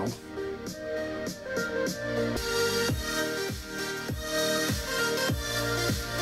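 Electronic dance track played through a pair of Edifier R1700BT bookshelf speakers, with a steady kick drum about every two-thirds of a second; the sound grows fuller and brighter about two and a half seconds in.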